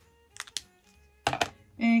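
Plastic alcohol-marker pens being handled on a table: a couple of light clicks about half a second in, then a louder clatter of clicks just past a second. Faint background music runs underneath.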